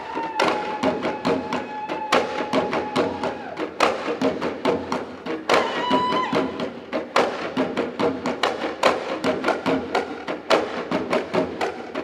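Nigerian folk drumming: several hand drums carried under the arm, struck in a fast, dense rhythm. A long high held note sounds over it in the first few seconds, and a shorter one about six seconds in.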